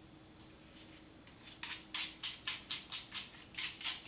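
Small plastic brush scrubbing dry dust out of a pleated vacuum cleaner filter, in quick scratchy strokes about three to four a second that start about a second in.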